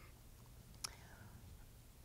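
Near silence: room tone in a pause between sentences, with one short faint click a little before halfway.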